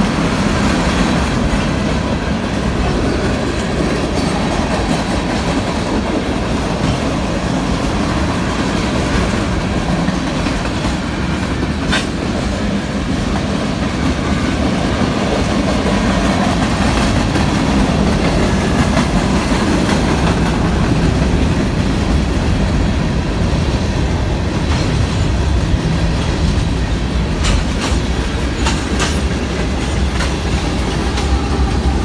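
Freight cars of a manifest train (tank cars and covered hoppers) rolling past close by: a steady rumble of wheels on rail, with a few sharp clicks, most of them near the end.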